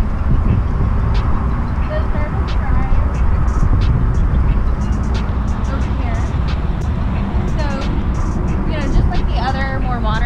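Wind buffeting the camera microphone outdoors: a steady, uneven low rumble, with faint voices talking near the end.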